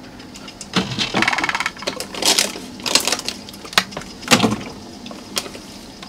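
A portable compressor fridge's plastic lid being lifted, then plastic water bottles knocking and crinkling as they are set into the bin: a string of separate knocks and clicks with a quick rattle of ticks a second or so in.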